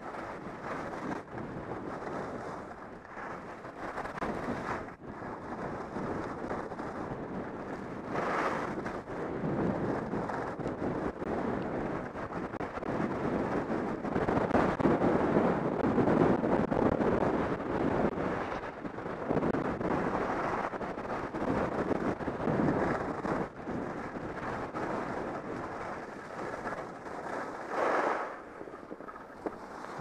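Wind rushing over a helmet-mounted camera's microphone during a fast ski descent, mixed with the hiss and scrape of Atomic Theory skis on packed snow. The rush swells and fades with speed and is loudest for a few seconds around the middle.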